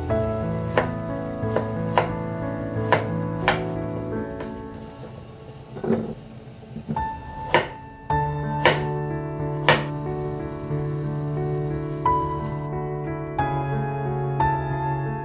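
Chef's knife chopping through crisp kohlrabi and carrot onto a bamboo cutting board: single sharp strikes every half second or so, a pause in the middle, then a few more strikes. Soft piano background music plays throughout.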